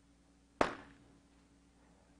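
A quiet pause with faint steady room hum, broken once, a little over half a second in, by a single short, sharp click-like sound.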